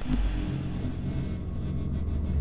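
Deep, steady bass rumble of a cinematic logo-reveal sound effect, with a faint hiss above it. It starts suddenly as the music cuts off.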